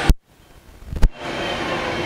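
Southwestern Industries Trak DPM bed mill's spindle running steadily at high speed, about 3,000 RPM in the high range. Just after the start the sound cuts off abruptly with a click into a quiet gap of about a second, then returns with another click and runs steadily again.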